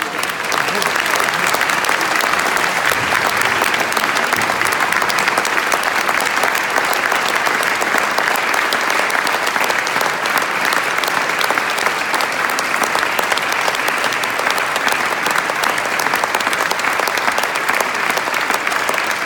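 Audience applauding, dense and steady.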